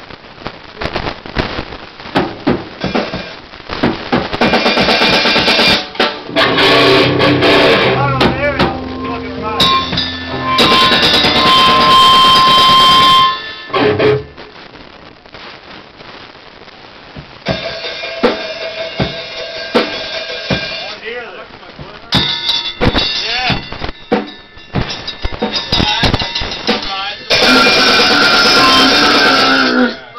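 A grindcore band playing a song live in a small room: fast drum kit with electric guitar and shouted vocals. The playing comes in loud blocks, with a quieter stretch of drum hits alone about halfway through.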